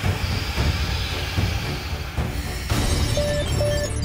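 Cartoon battle soundtrack: dramatic music over a rumbling noise, then near the end three short electronic alarm beeps from a cockpit damage display, warning that the robots have been knocked out by the hit.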